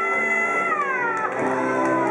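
A woman singing one long, high, wailing note, held for under a second and then sliding down in pitch, over steady instrumental accompaniment.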